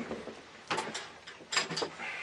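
Short knocks and clatter of objects being handled on a desk while a pen is hunted for: one sharp knock near the middle and two more close together towards the end.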